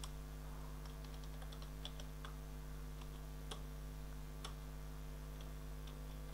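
Faint, irregular keystrokes on a computer keyboard, a couple of sharper clicks among them, over a steady low electrical hum.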